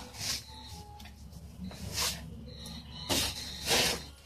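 Broom bristles swishing and brushing against a plastic basket and the clothes in it, in about four short strokes.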